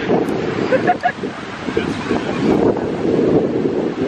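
Strong wind buffeting the camera microphone: a loud, gusting rumble.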